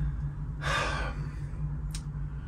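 A man's single audible breath, about half a second long, heard a little over half a second in, over a steady low hum.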